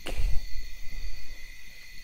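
A low rumble, loudest in the first second, under faint steady high insect chirring in the background.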